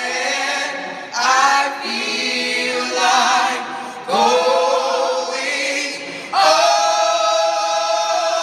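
Mixed-voice gospel vocal ensemble singing in close harmony, with strong new phrase entries about a second in, about four seconds in and just after six seconds.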